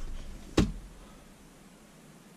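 A single sharp knock inside a car cabin about half a second in, over a low rumble that dies away within the first second or so.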